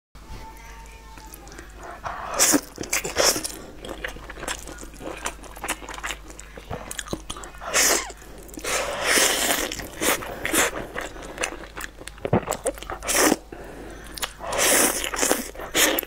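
Noodles being slurped and chewed with chopsticks, in bursts of loud slurping: a little after two seconds, around eight to ten seconds, and again near the end.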